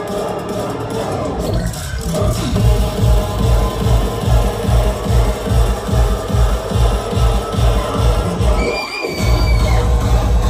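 Dubstep bass music playing loud over a club sound system, picked up by a phone: the heavy bass comes in about two seconds in and pulses about twice a second, cuts out briefly near the end, then comes back.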